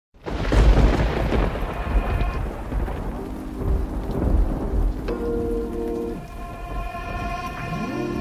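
Thunder rumbling with rain, strongest in the first two seconds and then fading, under intro music whose held synth chords come in about midway, with a rising sweep near the end.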